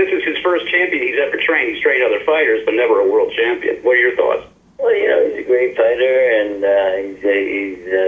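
Speech only: one person talking over a conference-call telephone line, thin and narrow-sounding, with a short pause about halfway through.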